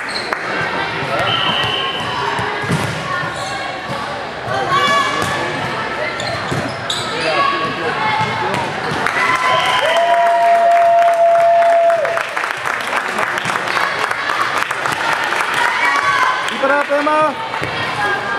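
Indoor volleyball rally in a large gym: a short high whistle about a second in, then the ball being struck, with players and spectators calling out over one another.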